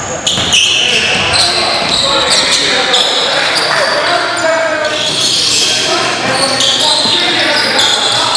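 Live basketball play on a gym floor: sneakers squeaking in short high squeals, the ball bouncing, and players' voices calling out indistinctly in the hall.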